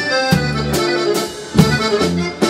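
Stocco button accordion playing a mazurka: a running melody over a pulsing bass-and-chord accompaniment, with evenly spaced accented beats and a brief drop in level just before a strong accent near the end.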